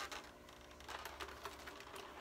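Faint, scattered clicks and crackles of a clear plastic blister tray being picked at with a slim metal tool to free small accessories, over a steady low hum.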